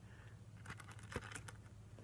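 Faint handling noise: a scatter of light clicks and rustles as a paper card is held and moved about, with one sharper click about a second in.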